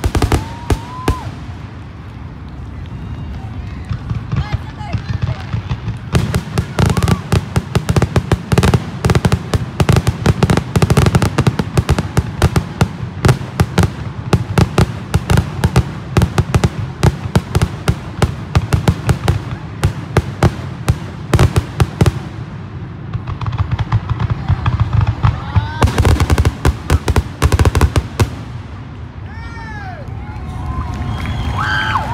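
Fireworks going off as long runs of rapid cracks, many a second. One long volley is followed by a short lull, then a second burst near the end.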